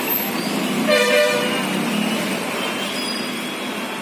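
A vehicle horn gives one short honk about a second in, over steady traffic noise as a bus drives through a flooded street.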